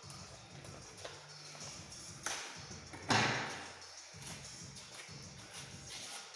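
Kraft paper envelope being torn open by hand: a short rip about two seconds in, then a louder, longer tear about three seconds in that trails off, over faint background music.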